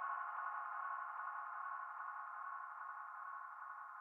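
Synthesizer drone: a steady cluster of held tones, slowly fading out in the closing seconds of an electronic track.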